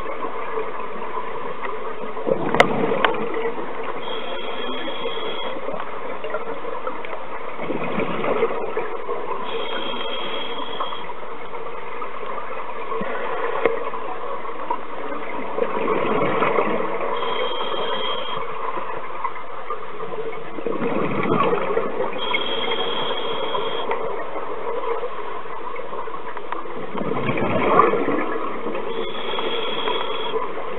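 Scuba regulator breathing heard underwater: a burst of exhaled bubbles about every five to six seconds over a steady drone. A short high whistle recurs between the breaths.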